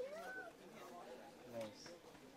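A faint human voice: a short, high vocal sound that rises and falls in pitch, like a wordless 'ooh' or 'hmm', followed by a lower murmur about a second and a half in.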